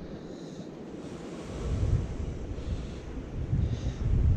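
Wind gusting on the microphone over a steady wash of surf on the rocks. The rumbling gusts grow stronger from about halfway through.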